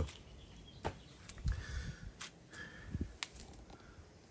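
Faint handling in a tub of water: a few light clicks and small splashes as soaking foam pool-noodle rings are moved by hand.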